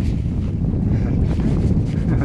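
Wind buffeting the camera microphone aboard a small sailing trimaran, a steady low rumble.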